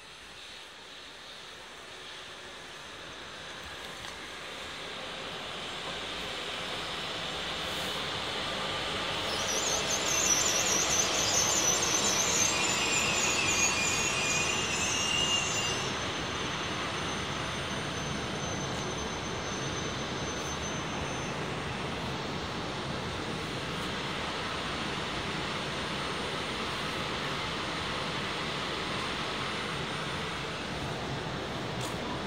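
E6-series Akita Shinkansen Komachi train pulling into the platform. Its running noise grows louder over the first ten seconds, and it gives a high squeal for several seconds midway as it brakes. A steady rumble follows as it rolls slowly alongside.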